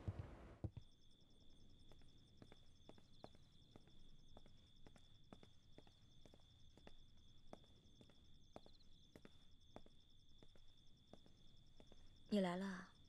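Faint footsteps clicking on pavement, about two steps a second, over a steady high-pitched drone of night insects.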